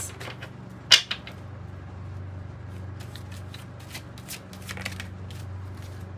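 A deck of oracle cards being shuffled by hand: cards sliding and flicking, with one sharp snap of the cards about a second in and softer scattered clicks after. A low steady hum runs underneath.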